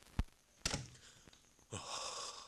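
A dull thud, then a sharper knock, followed near the end by a person's gasping, stammering 'uh... uh...' with a falling pitch.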